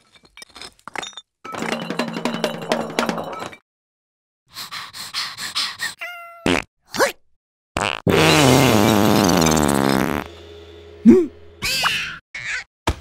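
Cartoon sound effects and larva character vocalizations. A run of small clicks and a rattling stretch come first, then short squeaks. About eight seconds in comes the loudest sound, a long buzzing cry lasting about two seconds, followed by a short swooping squeak.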